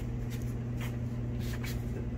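Light handling clicks and rubs as an angle grinder is picked up and turned in the hands, over a steady low electrical hum.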